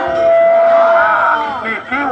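A man's voice chanting in long, wavering sung phrases through a loudspeaker, with a steady tone held under it for about the first second and a half.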